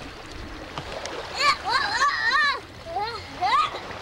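A young child's high voice calling out in drawn-out, sing-song sounds without clear words: one long rising-and-falling call about a second and a half in, then two shorter rising calls. Underneath is a steady outdoor hiss.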